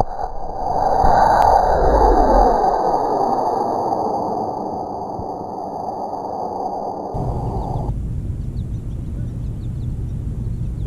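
Estes C6-5 black-powder model rocket motor firing at lift-off: a loud rushing hiss, loudest over the first couple of seconds and easing off as the rocket climbs away.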